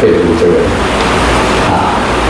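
A man's voice drawing out pitched syllables in short stretches, the same low voice that is lecturing on either side.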